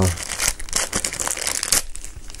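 A clear plastic bag crinkling as it is handled, with dense, irregular crackles throughout. The bag holds interchangeable mains plug adapters for a power brick.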